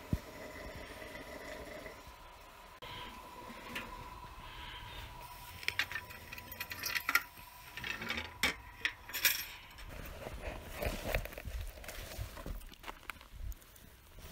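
Metal clinks and knocks from the steel door of a wood stove being opened onto the fire, a cluster of sharp strikes over a few seconds in the middle, over a low steady background.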